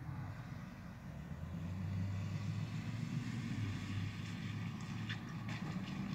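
Low, steady rumble of an engine, growing louder over the first two seconds and then holding, with a few faint clicks near the end.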